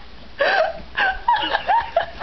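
A person laughing hard in short, high-pitched squeals, several in quick succession with breathy gasps between them.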